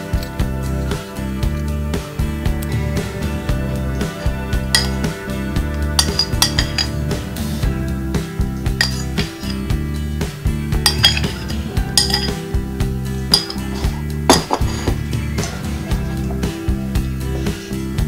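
Background music playing steadily, with scattered clinks of a metal spoon against a ceramic bowl and plate as filling is scooped out. The loudest clink comes about three quarters of the way in.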